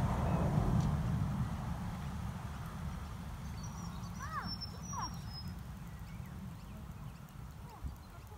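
Wind rumbling on the microphone, strongest in the first second, with a few short chirping bird calls about four to five seconds in.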